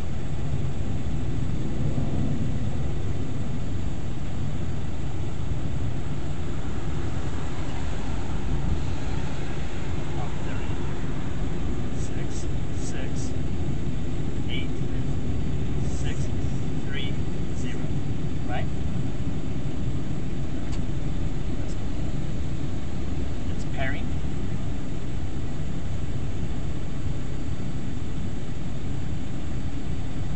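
Steady low rumble of a parked car running, heard from inside its cabin, with a few faint short chirps in the middle.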